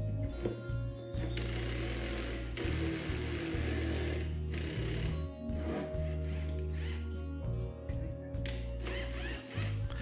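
Background music over a 24-volt cordless drill spinning a hole saw against a wooden cabinet top, loudest from about one to four seconds in. The saw is not cutting through.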